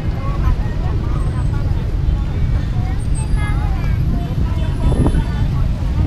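Indistinct chatter of passers-by over a steady low rumble of street traffic, with a couple of sharp knocks near the end.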